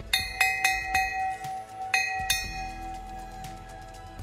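Golf-course warning bell struck five times with a hand-held striker, three quick strikes then two more a little over a second later, each leaving a clear ringing tone that fades slowly. It is rung to warn golfers that walkers are crossing the fairway.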